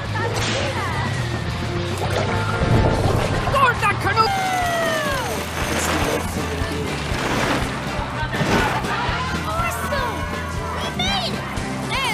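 Cartoon soundtrack: background music with sound effects and wordless voices. A long falling glide about four seconds in, and short chirping glides near the end.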